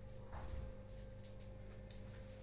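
Faint ticking of a Labrador's claws on a stone-tiled floor as it walks, over a steady low hum. There is a brief soft sound about half a second in.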